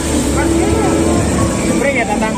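Street noise: people talking in the background over a steady low rumble of vehicle traffic.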